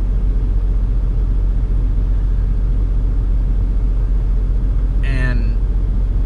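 Semi truck's diesel engine idling, a steady low rumble heard inside the cab. A short voice sound, a hum or murmur, comes about five seconds in.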